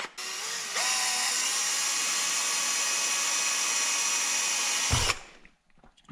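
Cordless drill spinning up with a rising whine, then running steadily for about four seconds as a small pilot bit bores through a closed-cell molded foam handguard cover, stopping about five seconds in.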